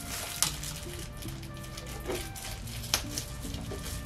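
Background music with held notes, over which plastic wrapping is pulled off a shampoo bottle by hand, giving sharp crackles about half a second in and near three seconds.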